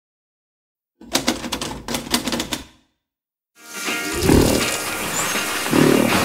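Typewriter keys clacking in a quick, uneven run for just under two seconds. After a short silence, music begins with swelling low notes.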